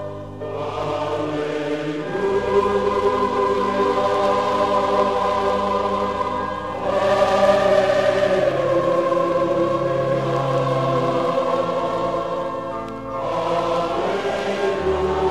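A choir singing in long sustained chords over low instrumental accompaniment, with breaks between phrases about seven seconds in and again near the end.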